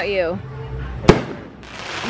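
Aerial fireworks going off, with one sharp bang about a second in. A voice exclaims at the start.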